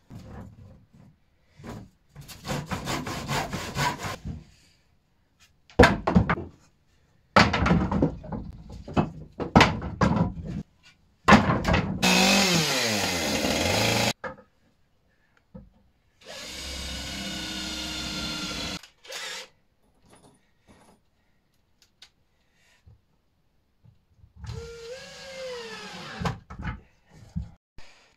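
Hand saw cutting a wooden batten in quick, even strokes, then knocks from handling and fitting wood. After that come short loud runs of power tools: a chainsaw cut about twelve seconds in, a steadier motor run, and near the end a cordless drill whose pitch rises and falls with the trigger.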